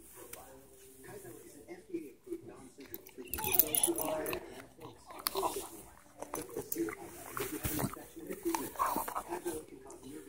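A dog chewing a chewy dried sweet potato treat: irregular wet smacks and clicks of the jaws, getting busier and louder about three seconds in.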